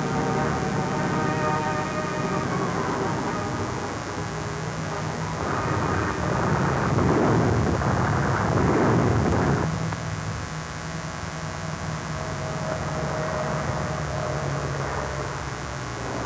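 Propeller aircraft engines droning steadily, with a louder, rougher roar from about five and a half to ten seconds in.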